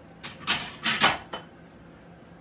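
Dishes and cutlery clattering: a plate handled and set down with spoon clinks. There are a few sharp clatters in the first second and a half, the loudest about a second in.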